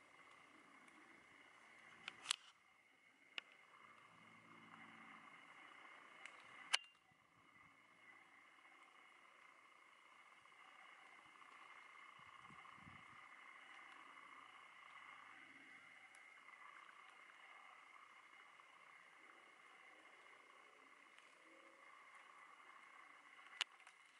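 Near silence: a faint steady high-pitched hum, with a few sharp clicks, the loudest about two and seven seconds in.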